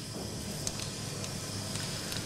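Steady hiss of operating-theatre background noise, with a faint click a little under a second in.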